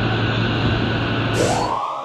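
Channel-intro sound effect: a loud rushing noise over a low hum, then a rising sweep near the end that opens into sustained electronic synth tones.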